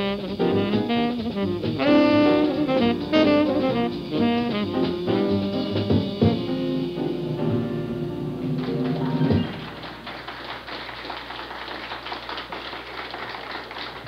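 Live jazz combo, saxophone over drums, playing the final bars of a tune, which ends about two thirds of the way in. Audience applause follows the last note.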